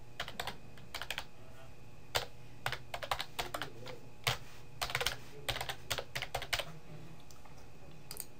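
Typing on a computer keyboard: uneven runs of key clicks that stop a little over a second before the end.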